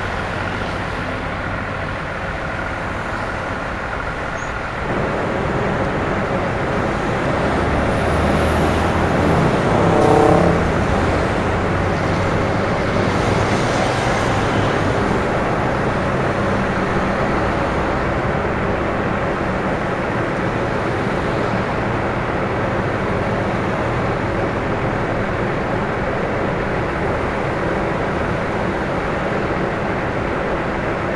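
Vehicle engines idling in stopped highway traffic, a steady low hum over road noise. About ten seconds in, a brief louder sound with a pitched tone comes and goes.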